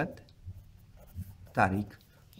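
Pen writing on ruled notebook paper, a faint scratching between two short bits of a voice: one at the very start and one about one and a half seconds in.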